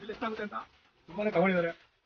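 Speech only: a voice calling out in two short excited bursts.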